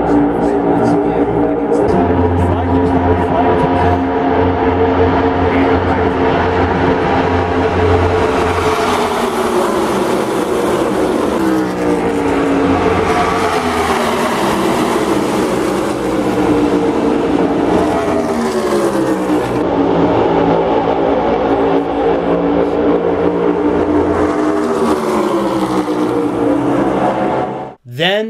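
A pack of NASCAR Cup Series stock cars racing at full speed, the loud, steady drone of many V8 engines together. Several times the pitch slides slowly down as cars go past. The sound cuts off suddenly near the end.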